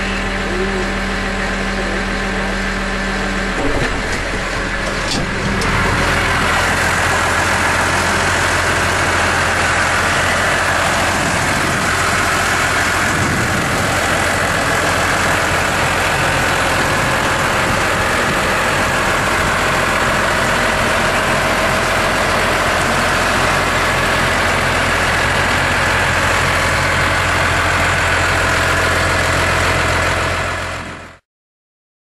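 Six-cylinder, 411-cubic-inch diesel engine of a 2010 Case IH Maxxum 125 tractor running steadily at idle. It is heard first from the driver's seat in the cab, then, after about five seconds, from outside beside the hood, where it is a little louder.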